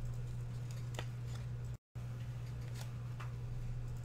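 Faint rustle and a few soft clicks of a baseball card being slid into a clear plastic sleeve and holder, over a steady low electrical hum. The audio cuts out completely for an instant partway through.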